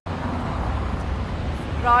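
Steady low rumble of city road traffic, with a voice starting near the end.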